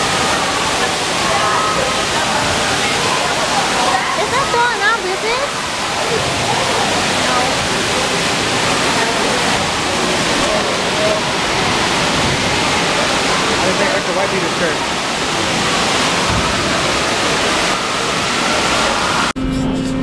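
Steady rush of spraying and pouring water from an indoor water park's play structure, with children's voices mixed in. It cuts off suddenly near the end.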